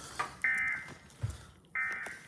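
Emergency Alert System SAME data bursts played through a TV's speakers: short, harsh, buzzy screeches, one about half a second in and another starting near the end, about a second and a half apart. They are the repeated end-of-message bursts that close a required weekly test.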